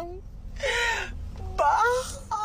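A man's high-pitched, drawn-out wailing voice that falls in pitch, broken by a breathy sigh about half a second in, then voiced again near the end.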